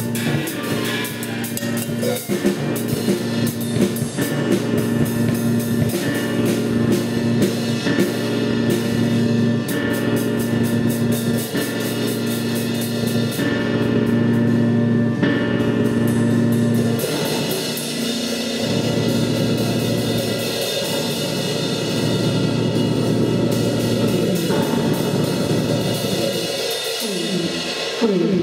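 Live band playing: a drum kit with busy snare and cymbal strokes over sustained electric guitar and keyboard tones. About two-thirds of the way through, the drumming thins out and the held tones carry on.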